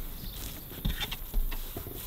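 Hands kneading crumbly pastry dough in an earthenware bowl: irregular soft squishing and rustling with dull thumps, two of them stronger near the middle.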